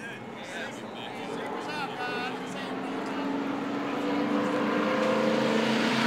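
NASCAR stock car V8 engines running, growing steadily louder over the last few seconds as the cars come closer.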